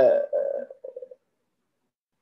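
A man's voice trailing off: the end of a drawn-out hesitation sound and a few mumbled syllables, then about a second of dead silence, the audio gated to nothing.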